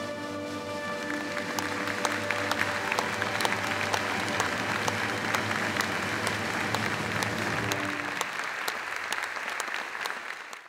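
Audience applause that builds about a second and a half in, over held notes of instrumental music that fade out near the end.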